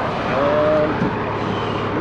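Heavy-duty wrecker's diesel engine idling steadily close by, with a brief voice-like sound about half a second in.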